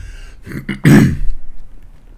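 A man clearing his throat once, loudly, about a second in.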